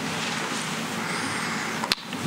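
Steady background hiss of room tone picked up by open microphones, with one sharp click shortly before the end.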